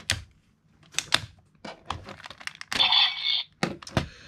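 Hard plastic toy parts clicking and clacking under handling, with a short scrape about three seconds in, as a plastic Ninja Shuriken star is worked loose and lifted off the centre of a toy shuriken weapon.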